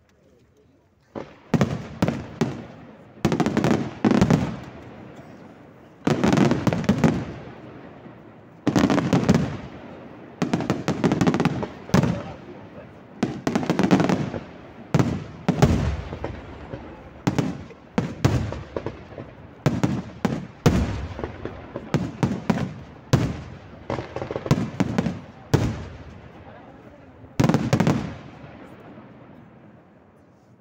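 Aerial firework shells bursting one after another in a fast barrage, sharp bangs each trailing off in a long echo. It starts about a second in, and the last big burst comes near the end.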